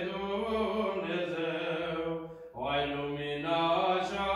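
A single male voice chanting Orthodox vespers text on fairly level reciting notes, with a short breath pause about halfway through.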